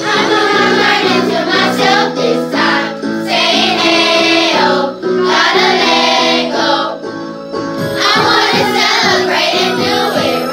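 A group of children singing a pop song in unison over a backing track.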